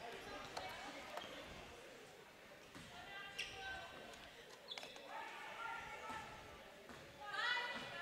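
Faint court sounds of a basketball game: a basketball bounced on the hardwood floor, short high sneaker squeaks, and distant calls from the players.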